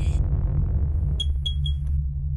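Electronic logo-sting sound effect: a deep, steady electronic bass drone with three short, high pings in quick succession a little past the middle.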